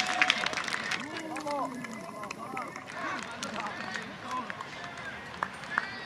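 Several voices shouting and calling out to one another after a goal, with a couple of sharp claps near the end.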